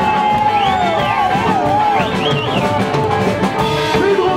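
Live rock and roll band playing: an electric guitar lead over a drum kit and strummed acoustic guitar, the lead notes bending and wavering in pitch.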